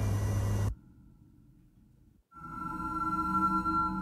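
Electronic soundtrack of sustained, droning high tones over a low hum. It opens with a loud burst of hiss-like noise lasting under a second, drops to near silence, and the tones come back about two seconds in, growing louder.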